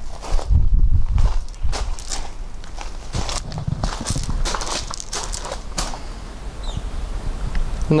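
Footsteps crunching on loose gravel in an irregular series, over a low wind rumble on the microphone.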